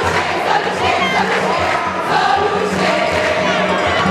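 A large crowd of schoolgirls singing jama songs together in the stands, loud and steady, with many voices over the din of the crowd.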